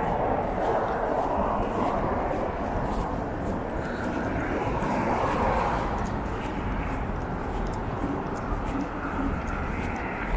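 Steady road traffic: cars passing on a wide slushy avenue, swelling and fading as they go by. Faint footsteps on the snowy pavement tick along at about two a second.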